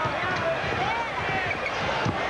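Arena crowd noise with a basketball being dribbled on the hardwood court, giving repeated low bounces, as players run up court on a fast break.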